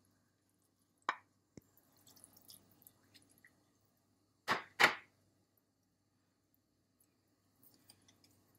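Wooden spoon working in a pot of pumpkin soup: soaked barley is scraped from a glass jar into the broth and stirred, with a soft knock, faint splashing and two sharp knocks close together about four and a half seconds in, the loudest sounds.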